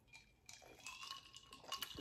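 Faint sipping and swallowing from a glass, with a few small clicks near the end.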